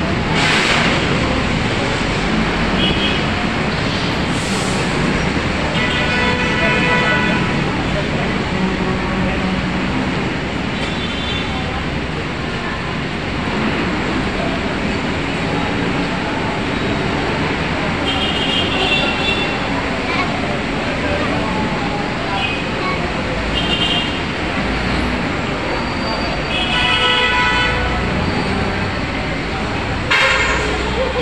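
Steady crowd and traffic noise on a busy elevated train-station walkway, with voices of passers-by. Several short pitched sounds, each lasting a second or two, come about six seconds in, in the middle and near the end.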